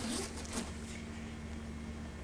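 Quiet room tone: a steady low electrical hum with faint hiss, and a little soft handling noise early on.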